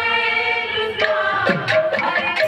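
Women's voices singing a Sambalpuri devotional kirtan through microphones, holding a long note together, with hand-drum strokes coming back in about a second in.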